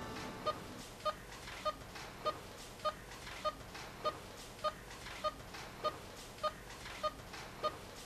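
Bedside patient monitor giving a short, mid-pitched beep with each heartbeat, evenly spaced at about 1.7 beeps a second. The beep rate matches a pulse of about 100 beats a minute.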